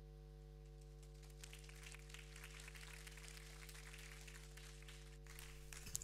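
Near silence: a steady electrical hum made of several low tones, with faint crackling noise from about a second and a half in until near the end.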